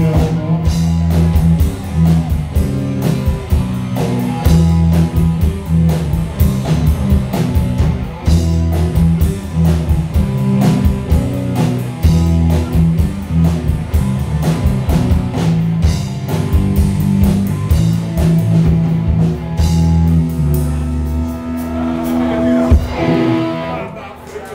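Live rock band playing loud: electric guitars over heavy bass notes and a steady drum-kit beat, with no singing. The playing thins out in the last couple of seconds as the song comes to its end.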